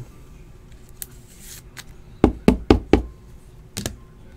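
Sharp knocks of a rigid plastic card toploader tapped against a tabletop: two faint clicks, then four quick raps in under a second a little past halfway, and two more near the end.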